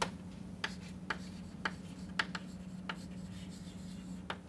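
Chalk writing on a blackboard: a string of short taps and scrapes, roughly every half second, as letters are stroked out, over a steady low hum.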